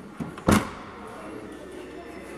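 Hyundai Elantra sedan's trunk lid being shut: a light knock, then a single solid thud as it latches about half a second in.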